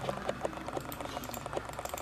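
A small motorised mechanism ticking rapidly and evenly, about ten ticks a second, with a faint tone to each tick.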